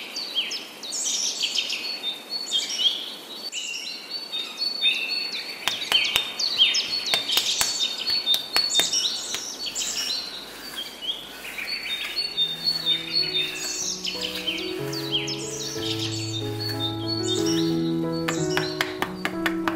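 Small birds chirping over and over in quick, falling calls, with a few sharp clicks about six to nine seconds in. From about twelve seconds in, soft sustained music notes rise beneath the birdsong.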